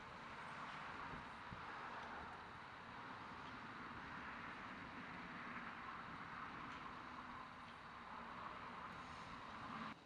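Faint, steady outdoor background noise: an even hiss like distant town traffic, with no distinct events.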